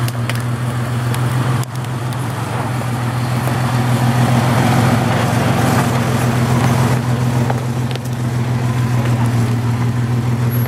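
Jeep Cherokee XJ engine running steadily at low revs while rock crawling, a constant low drone that swells slightly around the middle, with a brief dip about two seconds in.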